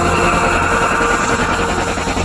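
Animated short's soundtrack: music with a noisy sound effect over it.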